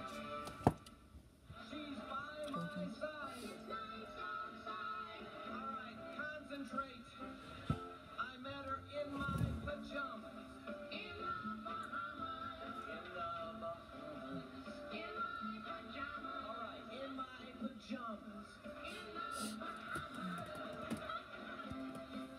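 Music with voices from a video soundtrack, played back through a tablet's speaker and picked up in the room.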